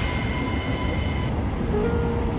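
Metro carriage ambience: a steady low rumble and hum from the train. Music notes come in near the end.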